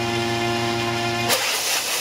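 A small drone engine running at a steady pitch on a rail launcher. Just past halfway it gives way to a sudden loud rush of noise as the launcher throws the drone off the rail.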